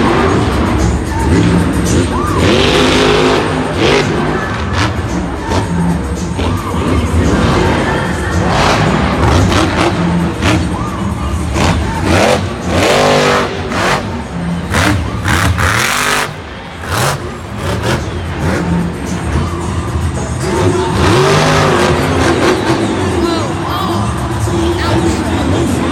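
Monster truck's supercharged V8 engine running hard during a freestyle run, its revs rising and falling in repeated bursts, heaviest in the middle of the run, over loud stadium PA music.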